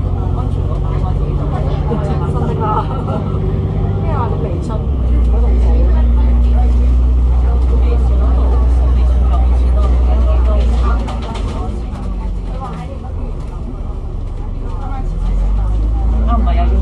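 Alexander Dennis Enviro500 MMC double-decker bus's Cummins ISL8.9 diesel engine running on the move, heard inside the bus. A deep drone comes up about five seconds in, eases off near eleven seconds and returns just before the end.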